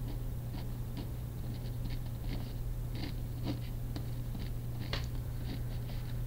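Pen scratching on lined paper in short, irregular strokes as a chemical structure is drawn, over a steady low hum.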